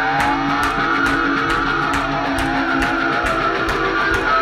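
Instrumental rock intro with no vocals: electric guitars with gliding, wavering pitches over a steady drum beat.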